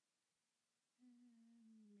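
Near silence, then about a second in a faint voice draws out a long, hesitant "aaand" for about a second, its pitch sinking slightly at the end.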